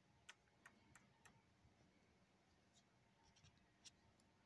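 Near silence with a few faint, sharp clicks and taps at irregular intervals, a cluster in the first second and more near the end.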